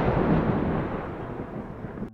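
Thunder rumbling low and slowly fading away.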